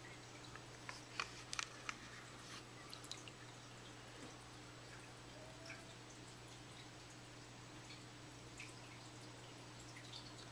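Quiet fish-tank sounds: a steady low hum with a few small drips and clicks in the first three seconds.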